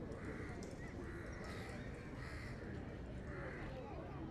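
Quiet background with a few faint, short animal calls, spaced about a second apart.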